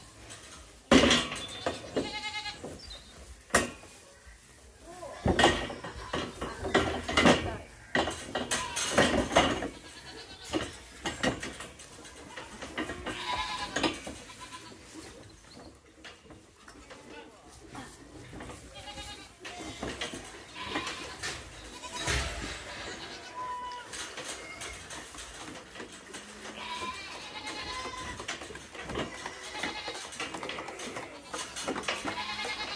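Hungry young calves bawling again and again for their milk, with loud knocks and clatter in the first few seconds as a plastic teat feeder is hooked onto the metal pen gate. The calling is heaviest in the first half and thins out later.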